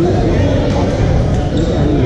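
Echoing din of a busy badminton hall: voices from players on several courts, with thuds of play mixed in.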